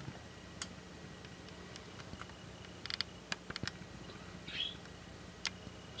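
Quiet background with a few faint, sharp clicks and ticks, bunched around the middle, and one short high chirp about four and a half seconds in.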